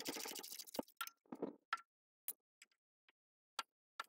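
Ratchet wrench clicking as bolts are turned out on a Briggs & Stratton overhead-valve engine: a quick run of clicks in the first second, then single clicks about every half second.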